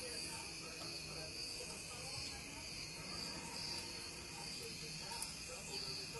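Faint, steady high-pitched insect chorus, its chirping pulsing a little more than once a second.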